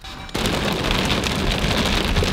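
Hail and rain pelting a car's roof and windshield, heard from inside the cabin as a dense, steady patter of rapid ticks that starts abruptly about a third of a second in.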